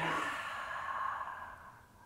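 A woman's long, audible exhale while holding a seated stretch: a breathy sigh that fades away over about a second and a half.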